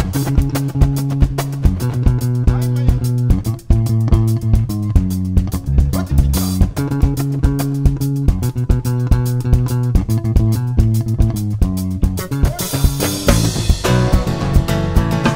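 Live band playing an instrumental passage: a prominent electric bass line over strummed acoustic guitar and a drum kit keeping a steady beat. The band drops out briefly about three and a half seconds in.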